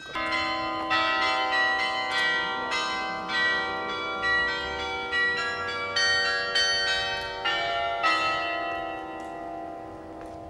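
Church tower bells ringing a sequence of struck notes at different pitches, about one or two strikes a second, each note ringing on under the next. The ringing starts abruptly and dies away near the end.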